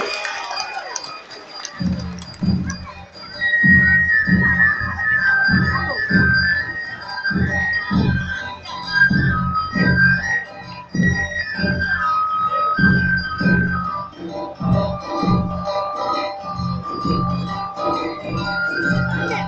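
Awa Odori dance music: drums beating a steady, driving rhythm under a high, stepping melody line. It begins about two seconds in, after a quieter start.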